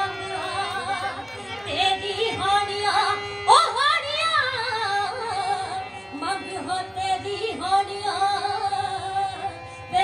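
A woman singing a Punjabi folk song (lok geet) in long, ornamented, gliding phrases over a steady harmonium accompaniment. She sings a loud rising phrase about three and a half seconds in.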